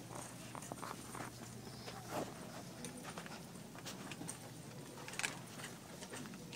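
Quiet shop-floor ambience: a steady low hum with scattered light taps and clicks, the sharpest about two seconds in and just after five seconds.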